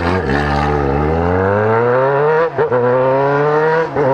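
Yamaha XJ6's 600 cc inline-four engine pulling away and accelerating, its pitch rising steadily, then a quick upshift about two and a half seconds in, after which it climbs again from a lower note.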